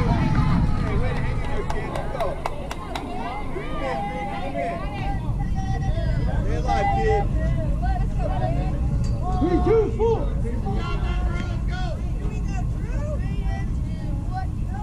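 Several indistinct voices of players and spectators calling and chattering at a baseball field, over a steady low rumble.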